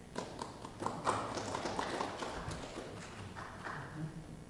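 A small audience applauding. The clapping swells about a second in and then thins out.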